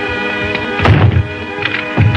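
Background music with a single sharp thud a little under a second in, from a body falling.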